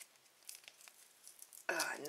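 Thin plastic shrink-wrap on a toy capsule crinkling and tearing faintly in small scattered crackles as fingers pick at it, because the wrapping won't come off.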